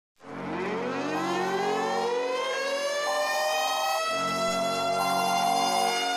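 Civil-defence air-raid siren winding up: its pitch rises over the first few seconds and then holds steady, over lower tones that switch on and off about every second.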